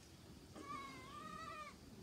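A single faint animal cry, about a second long, held near one high pitch with a slight rise and fall.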